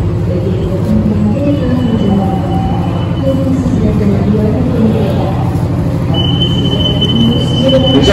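Railway platform beside a stopped passenger train: a steady low diesel hum from the train with indistinct passenger voices over it. A high steady tone sounds for about two seconds near the end.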